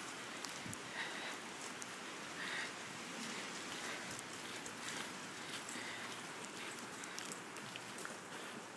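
Footsteps on a thin layer of fresh snow: light, irregular crunches and ticks over a faint steady hiss.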